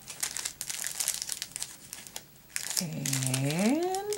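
Clear cellophane gift bag crinkling in quick, dense crackles as it is handled and opened. Near the end a drawn-out hum of a voice slides upward in pitch.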